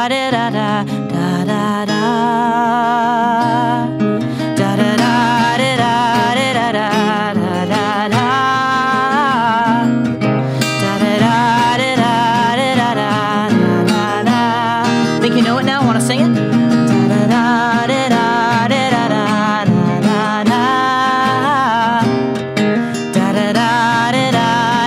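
Finger-picked acoustic guitar playing through a song's closing passage, with a wordless sung line holding notes with vibrato over it.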